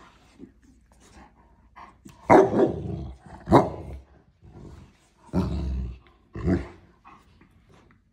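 A black terrier and a Scottish terrier play-fighting: four loud growling barks, the first about two seconds in, the third drawn out longer than the others.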